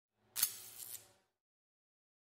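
Short logo intro sound effect: a sharp hissing hit about half a second in, followed by a fading tail with a second, smaller accent, over within about a second.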